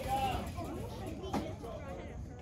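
Voices of spectators and players chattering at a youth baseball field, fairly faint, with one short sharp knock a little over a second in.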